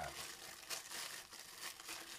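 Thin clear plastic bag crinkling in the hands as a pack of soft-plastic swim baits is handled, a faint, irregular crackle.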